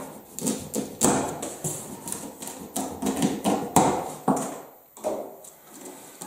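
Cardboard shipping box being cut open: the plastic strapping and tape are cut and the cardboard flaps pulled apart, an irregular run of sharp clicks, scrapes and tearing sounds.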